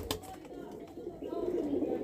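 Pigeons cooing faintly in the background.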